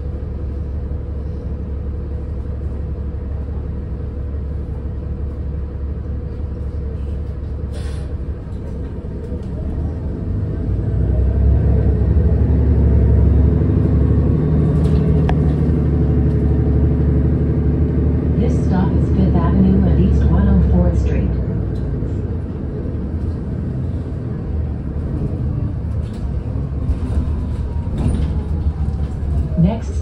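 City bus engine heard from inside the cabin, running with a steady low hum. About ten seconds in it works harder as the bus pulls away and gets up to speed, then eases off a little after twenty seconds as the bus cruises.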